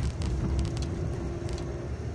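Low, steady rumble of a car heard from inside its cabin, with a faint steady hum that stops shortly before the end.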